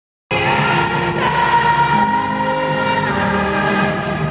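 A woman singing a pop ballad live over instrumental backing, recorded from the arena seats. It starts abruptly a moment in.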